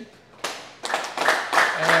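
A small group of people clapping, irregular overlapping hand claps starting about half a second in, with a brief spoken word over them near the end.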